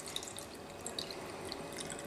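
Drinking water poured from a plastic bottle into a PVC bait-slug mold packed with cut mullet, a faint trickle with scattered drips as it fills the space around the bait.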